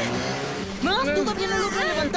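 Cartoon soundtrack: a vehicle engine running briefly at the start, then wordless cartoon voices straining and crying out from about a second in.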